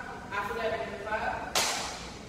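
A voice, then about one and a half seconds in a sudden, sharp hissing burst, the loudest sound here, fading over about half a second.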